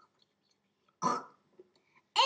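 A single short, throaty vocal noise about a second in, in the manner of a cough or throat-clearing, with quiet around it.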